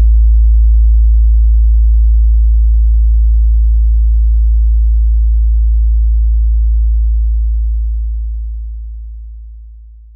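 A deep, steady electronic sine tone, like a hum, that fades out over the last couple of seconds.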